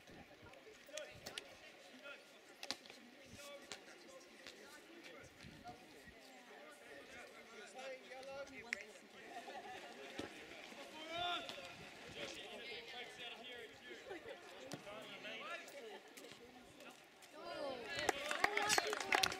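Distant voices of players and spectators calling out across an outdoor football pitch, fairly faint, growing louder a few times later on, with a few sharp knocks in the first seconds.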